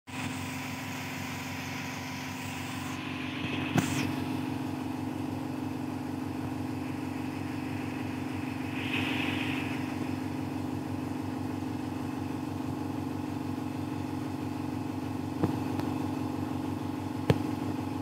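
A steady machine hum with a low drone, broken by a few sharp clicks: one about four seconds in and two near the end.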